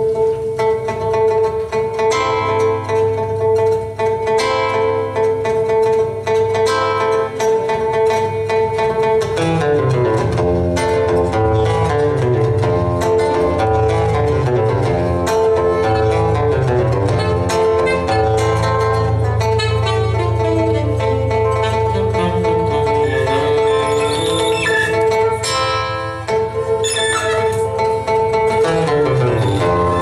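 Live instrumental music: an acoustic guitar picking a melody over a steady held drone note.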